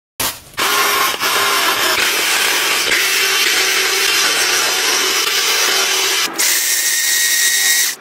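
Small electric mini vegetable chopper running: a steady whir of its motor and spinning blades, with a short break about six seconds in.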